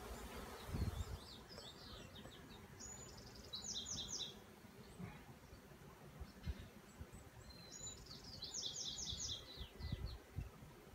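Honeybees buzzing around the hive, with a scrub-jay giving bursts of rapid, harsh, falling calls, three runs in all, the clearest a few seconds in and near the end.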